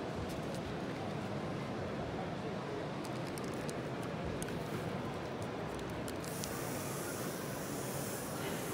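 Steady background murmur of a busy exhibition hall, with scattered faint sharp crackles. From about six seconds in comes a steady high hiss, from the electrostatic Pro-Grass box static-grass applicator being powered up.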